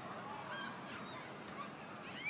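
Faint outdoor street ambience: a steady background murmur with distant voices and short, high chirping calls scattered through it.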